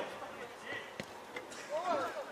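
A football kicked on artificial turf, one sharp thud about halfway through, with a player's shout near the end.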